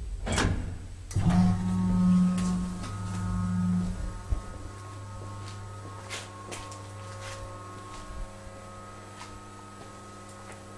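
KONE hydraulic elevator in motion: a sharp knock at the start, then about a second in its drive starts with a steady electric hum, louder for the first three seconds and then settling lower, with a few faint clicks along the way.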